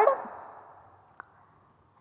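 The end of a woman's spoken word fading away, then near silence with a single faint click about a second in.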